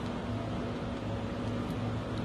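Steady background hum and hiss with no distinct event: room tone.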